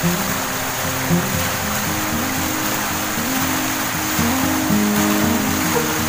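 Background music with a slow melody of held notes, over a steady rushing of river water.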